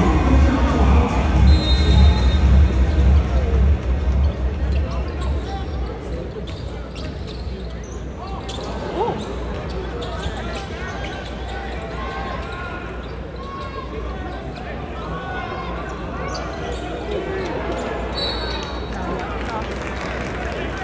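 Basketball arena ambience: crowd chatter over loud, bass-heavy arena music that drops away about four seconds in, with a basketball bouncing on the hardwood court.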